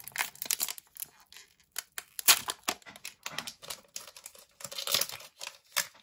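Foil wrapper of a Pokémon Shining Fates booster pack being torn open and crinkled by hand: a run of irregular sharp crackles and rustles.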